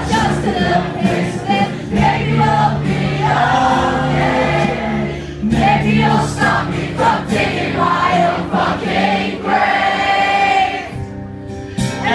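Live pop-punk song on a strummed acoustic guitar, the lead singer and the crowd singing along together like a choir. The guitar drops out briefly near the end and comes back in.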